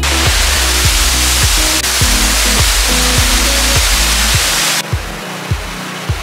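Rushing roar of Jonha Falls waterfall under background music with a steady beat; about five seconds in the water noise drops sharply to a softer river rush while the music carries on.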